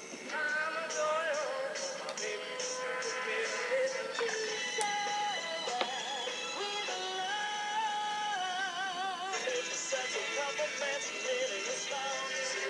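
Pop music with singing: short snippets of successive chart-topping pop songs, the song changing every few seconds, with a steady run of cymbal ticks in the first few seconds.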